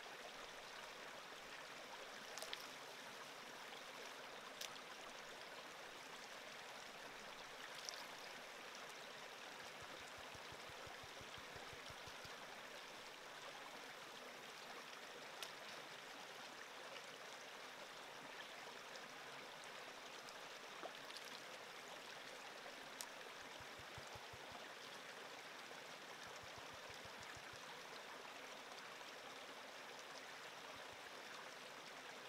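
Small creek flowing with a faint, steady rush of water, and a few sharp clicks of gravel in a plastic gold pan being washed in the stream.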